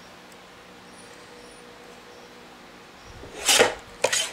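Paper trimmer blade drawn through a sheet of paper in one short swish near the end, after a few seconds of faint room noise.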